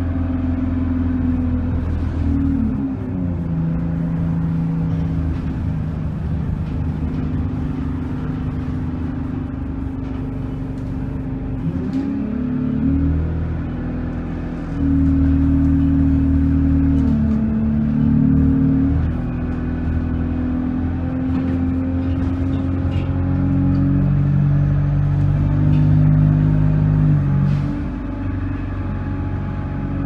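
Bus engine and drivetrain heard from inside the passenger cabin, a steady hum whose pitch steps up and down several times as the bus speeds up and slows, louder for a stretch about halfway through.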